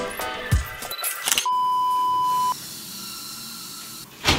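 A single steady censor bleep, one pure high tone lasting about a second, starting about one and a half seconds in and stopping abruptly. Background music plays before it.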